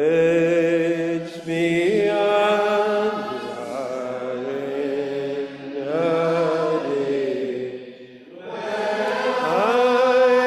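Congregation singing a metrical psalm unaccompanied, in slow, long-held notes, with a short break for breath between lines about eight seconds in.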